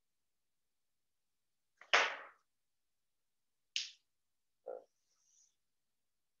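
Three sharp knocks of whiteboard markers being handled against the board and its tray; the first, about two seconds in, is the loudest and rings briefly. Near the end comes a faint high scrape of a marker starting to draw on the whiteboard.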